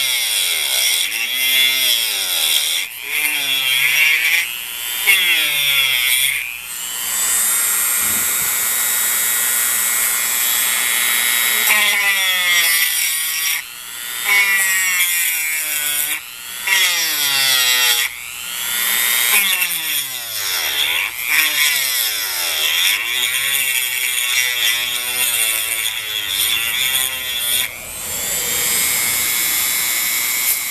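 Dremel rotary tool with a diamond-coated bit grinding into stone. Its motor whine keeps dipping in pitch and recovering as the bit bites into the stone and eases off, with a few steadier stretches.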